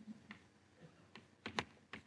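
Chalk tapping on a blackboard while writing: a few faint, scattered ticks, with a closer pair about one and a half seconds in.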